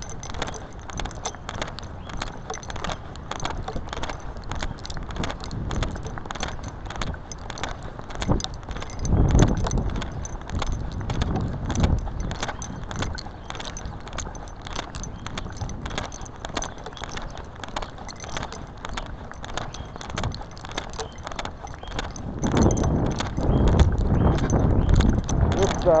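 Continuous rattling, clicking and rubbing from a body-worn camera jostling with each step as its wearer walks, with jangling like keys. Heavier low rumbles come through about nine seconds in and again near the end.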